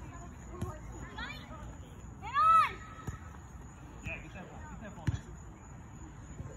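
A boy's high-pitched shout about two and a half seconds in, with a fainter call before it and distant voices throughout. Three short thumps of a ball being kicked fall about a second in, a little after the shout, and near the end.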